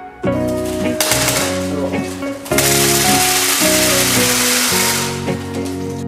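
Glass marbles poured from a plastic tub into an empty glass aquarium: a dense clatter that starts about a second in and is loudest from about two and a half to five seconds, over background music.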